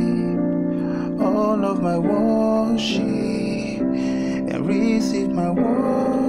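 Electronic keyboard playing a slow gospel chord progression (3-4-6-5, the third chord standing in for the first), with chords changing about every second, and a voice singing the melody along with it.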